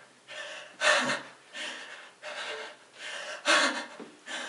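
A man breathing in quick, noisy gasps, about six in a row. The two sharpest and loudest come about a second in and shortly before the end.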